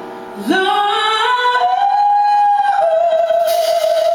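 A woman singing alone, without accompaniment, into a microphone. About half a second in, her voice slides up into a run of rising notes, holds a long high note, then settles onto a slightly lower sustained note.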